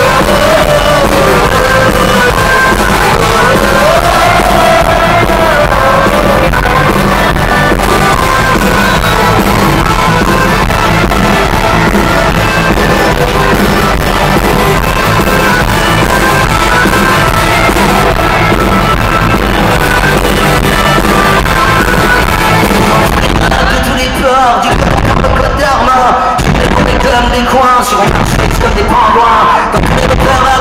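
Loud live rock band with a Celtic feel, heard from within the concert audience; a wavering melodic line stands out in the first few seconds, and the bass drops out briefly a few times after about 24 seconds.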